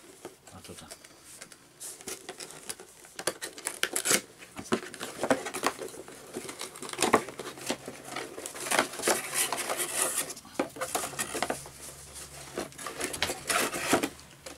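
Cardboard box being opened and a mug unwrapped from its paper: irregular rustling, crinkling and tearing of cardboard and paper, busier from about four seconds in.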